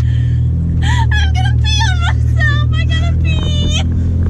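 Steady low drone of a straight-piped 6.7 L Cummins inline-six diesel heard inside the pickup's cab while driving, with high-pitched laughter over it from about a second in.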